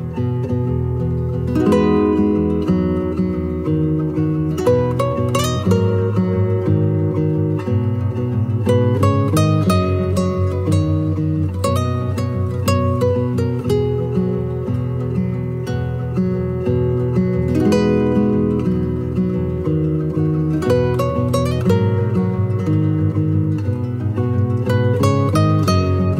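Background music played on acoustic guitar, a steady run of plucked notes and chords.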